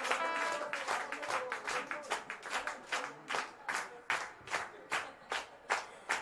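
Audience clapping in unison to a steady beat, about two to three claps a second, thinning out toward the end.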